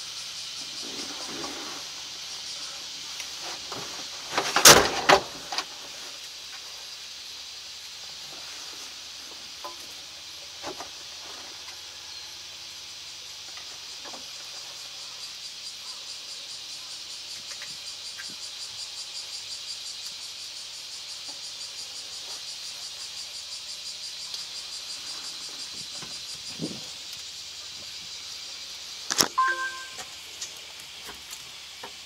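Steady high-pitched chorus of insects outside, with loud handling knocks and clicks inside the cab about five seconds in and again near the end, from a camera mount being fitted to the cab.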